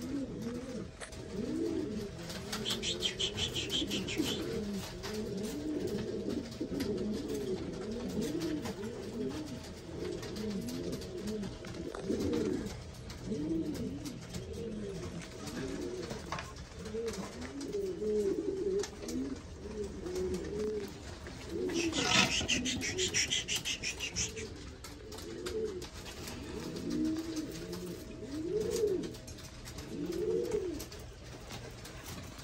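Buchón Gaditano pouter pigeon cooing over and over, one rising-and-falling coo after another, while it bows with its crop inflated. A brief rustle comes about two-thirds of the way through, over a faint steady hum.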